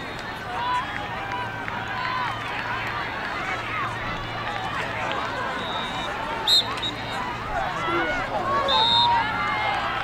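Voices of players and spectators talking and calling out, with one short, sharp referee's whistle blast a little past halfway that signals the start of the draw.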